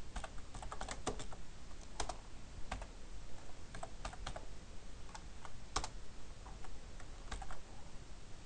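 Typing on a computer keyboard: irregular key clicks, some in quick runs, with short gaps between.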